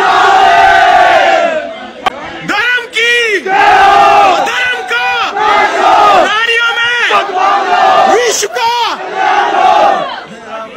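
A crowd of men shouting and yelling over one another in an angry street scuffle, loud strained shouts that keep coming in waves with brief lulls about two seconds in and near eight seconds.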